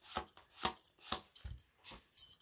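A deck of oracle cards being handled and a card drawn from it, with short sharp card snaps about twice a second.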